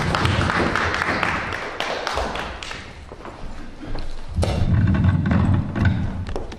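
Handling noise on a live microphone as it is taken and set in place: rustling in the first couple of seconds, then low rumbling and a few thumps.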